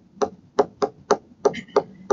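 Stylus tip tapping on a tablet screen while block letters are written: about six short, sharp taps, roughly three a second.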